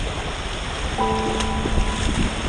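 Shallow surf and water sloshing around an inflatable paddling pool, close to the microphone. About a second in, a held chord of background music comes in over it.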